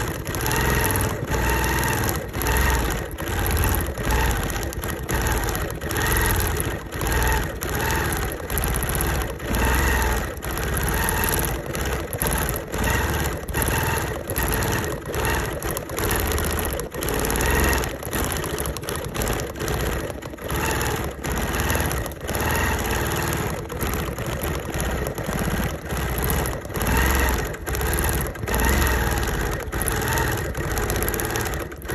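Sewing machine stitching through the layers of a quilt, running continuously, its sound swelling and dipping every second or so.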